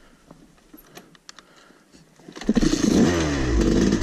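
Dirt bike engine starting up suddenly about two and a half seconds in and revved, after a quiet stretch with a few faint clicks.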